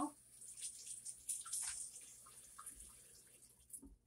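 Faint water splashing and dripping in a kitchen sink, fading off, with a few small clicks near the end.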